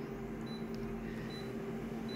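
Colour photocopier idling: a steady low electrical hum with a faint higher tone over it, and two faint short high blips.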